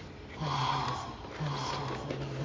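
A person slurping hot coffee: two airy slurps, the first longer and louder, the second about a second later.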